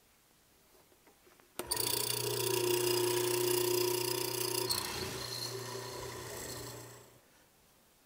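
Benchtop hollow chisel mortiser's electric motor switching on about a second and a half in and running with a steady hum and whine while square holes are cut. The sound dies away shortly after seven seconds.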